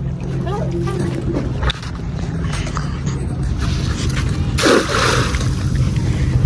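Weighted cast net hitting the water about five seconds in: a brief spattering splash as the ring of mesh and lead weights lands on the surface. A steady low hum runs underneath.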